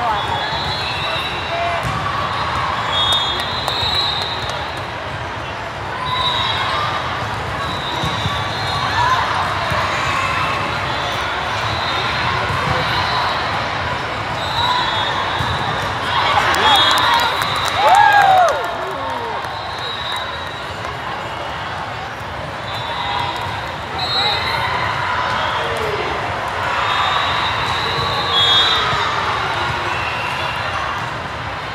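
Din of a large indoor volleyball hall: many voices and crowd chatter echoing, with short high squeaks of shoes on the sport court and ball contacts through a rally. It is loudest about two-thirds of the way through.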